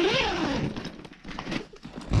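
Zipper on a fabric ice-fishing tent's door being pulled open, with a brief voice sound at the start.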